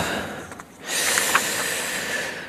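A man breathing close to a microphone after a coughing fit: a short hiss that fades, then a longer breathy hiss lasting about a second and a half.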